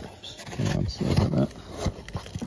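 A man's voice giving two short strained grunts, about half a second and a second in, as he reaches into a tight corner and pulls the carpet back.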